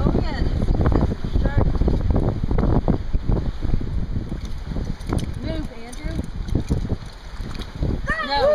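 Wind buffeting the microphone at the water's edge: a loud, uneven rumble that eases off in the second half, with faint voices underneath.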